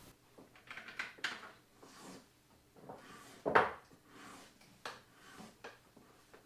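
Light clicks and knocks of small objects being handled and set down on a wooden table, with one louder clack about three and a half seconds in.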